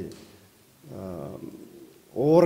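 A man's voice: one short, soft stretch of speech about a second in, between pauses.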